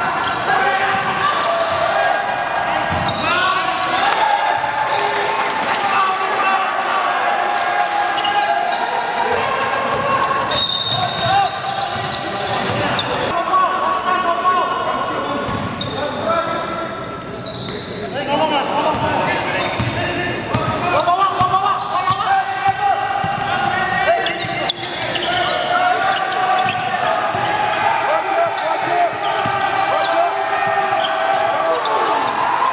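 Live basketball game in a gym: a ball dribbling and bouncing on the hardwood court, with players' and bench voices calling out and talking over it throughout, echoing in the hall.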